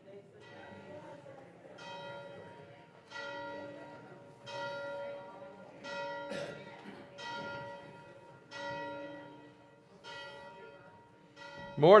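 A bell struck about eight times at a slow, even pace, roughly once every second and a half, each stroke ringing on and fading before the next, to open the worship service.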